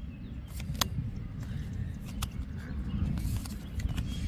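Baseball cards handled in a stack, a card slid off the front and tucked to the back, giving a few short sharp clicks and slides over a steady low background rumble.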